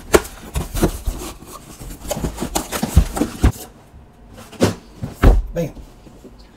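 Cardboard shipping box and a boxed mini crawler being handled: cardboard rubbing and scraping with many small knocks. After a quieter moment come two loud knocks near the end as the box is set down on the workbench.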